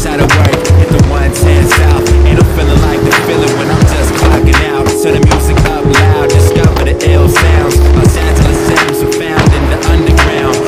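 Hip-hop backing beat with a steady, repeating bass, over the sound of a skateboard rolling and clacking sharply as tricks are popped and landed.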